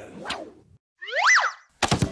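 A short hit near the start, then about a second in a brief cartoon-style boing sound effect whose pitch rises and falls, and a couple of sharp clicks just before the end.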